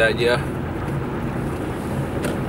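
Steady engine and road noise heard from inside the cabin of a moving car.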